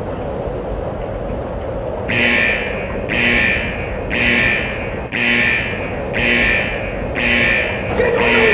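An alarm blaring in short blasts about once a second over a steady low rumble, the blasts starting about two seconds in.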